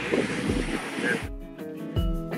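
Outdoor wind noise on the microphone with a trace of a voice, cut off about a second in by background music with a steady low beat.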